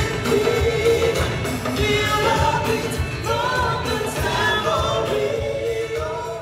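A musical-theatre cast singing a pop number on stage with band accompaniment and a steady beat: a lead voice with the ensemble joining in.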